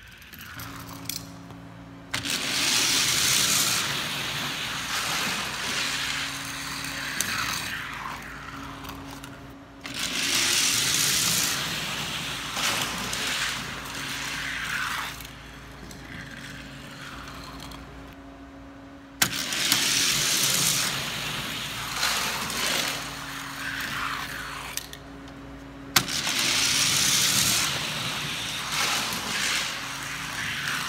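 Die-cast toy cars rolling down a plastic gravity race track, heat after heat: several stretches of a few seconds of loud, steady rolling hiss with a low hum, each starting suddenly, with sharp clacks in between.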